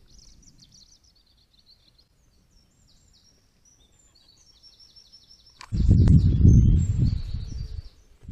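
Faint chirping of small birds in the background for the first few seconds, then, nearly six seconds in, a sudden loud low rustling noise close to the microphone that runs on for about two seconds.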